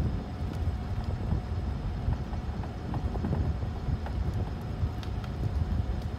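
Wind buffeting the microphone, a steady low rumble with scattered light clicks.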